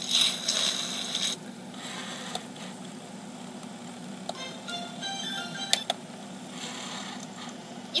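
Short stretch of DVD menu music played through a tablet's small speaker, with a noisy burst in the first second and a sharp click a little past halfway.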